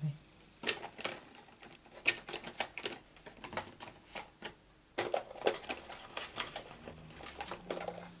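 Light clicks, taps and paper rustling from small die-cut cardstock pieces being picked out and handled by hand, in two scattered bursts with a quieter spell between.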